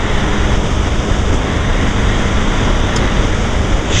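Loud, steady wind rush over the microphone of a Honda XRE 300 motorcycle cruising at about 110 km/h, with the single-cylinder engine's drone faintly underneath.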